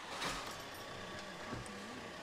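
Volkswagen Crafter van's diesel engine just after starting, settling into a steady idle.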